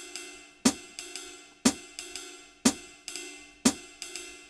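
Metronome app's sampled jazz ride cymbal pattern with a hi-hat foot chick, at 120 BPM, with a strong stroke once a second and lighter swung notes between. The swing is being raised during playback, so the off-beat notes move later.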